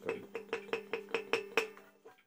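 A plucked string instrument picked rapidly, about five strokes a second, on a low note that keeps ringing, the strokes growing softer and stopping near the end.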